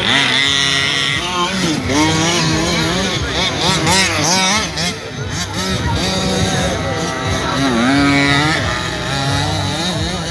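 Small two-stroke petrol engines of large-scale RC buggies revving up and backing off as the cars race, several engines overlapping, their pitch rising and falling again and again.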